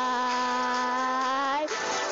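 Pop song with a singer holding one long, steady note on the word "goodbye", which breaks off about a second and a half in, followed by a brief noisy swell as the next line begins.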